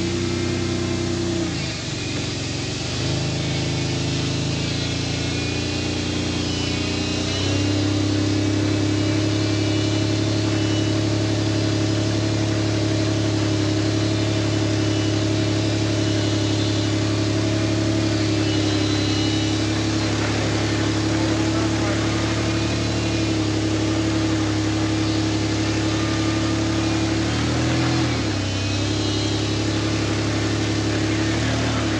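Toyota Land Cruiser engine running at steady, held revs, with brief dips and shifts in pitch in the first few seconds and again near the end, and a step up in loudness about seven seconds in.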